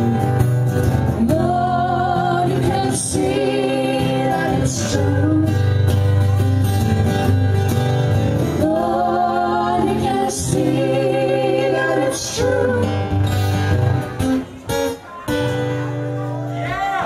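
Live performance of an acoustic song: two acoustic guitars strumming under a woman's lead vocal with harmony singing. The music drops out briefly in short gaps near the end.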